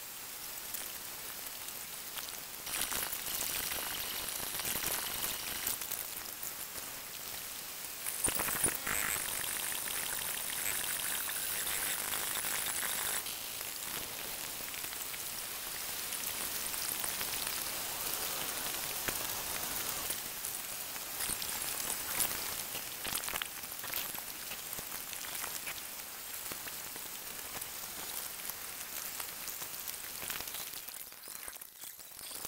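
A steady, mostly high-pitched hiss, a little louder from about three seconds in and louder again from about eight to thirteen seconds in.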